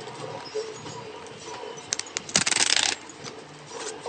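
Paper handled in the hands: a few light clicks about two seconds in, then a short, loud crackling rustle lasting under a second.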